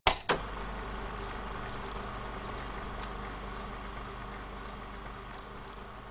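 Sound effect for a studio logo: two sharp clicks right at the start, then a steady low hum with hiss and a few faint ticks.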